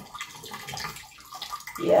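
Ginger juice trickling and dripping through a fine mesh strainer into a plastic pitcher as a spoon presses the blended ginger pulp.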